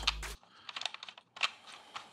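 A scatter of light clicks and taps as a handle is fitted onto a small portable light, handled close to the microphone.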